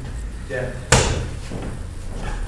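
A boxing glove striking a focus mitt once about a second in, a sharp smack, during pad work.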